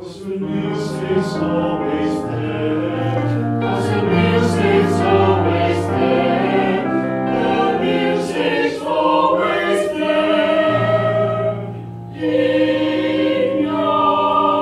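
Small mixed choir of men and women singing in parts, coming in together at the start. There is a brief break for breath about twelve seconds in, and then the singing goes on.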